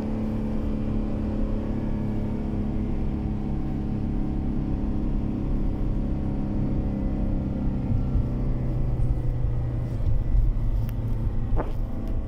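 Minibus engine and road noise heard from inside the cabin while driving: a steady low rumble with an even engine hum.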